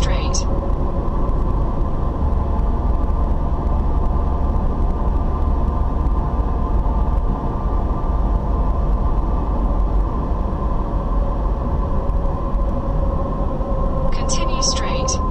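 Car cabin noise while driving at steady speed: a constant low rumble of tyres and engine, with a steady hum running through it.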